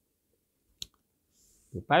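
A single sharp click a little under a second in, during a pause in speech, followed by a faint breath before a man's voice resumes near the end.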